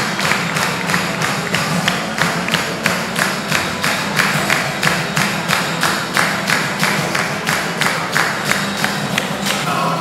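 Acoustic band playing an instrumental passage: acoustic guitars over a held low note, with a steady beat of sharp strikes about three a second.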